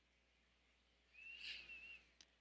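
Near silence, with one faint, wavering high squeak lasting under a second, a little past the middle: a Sharpie felt-tip marker squeaking on paper as it starts a stroke.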